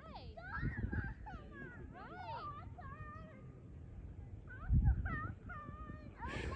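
Distant high-pitched voices calling and chattering across the water, with low gusts of wind on the microphone about a second in and again near the end.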